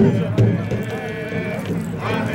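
Powwow singing: voices holding long, wavering high notes, with drum beats that are sparser than the steady beat just before.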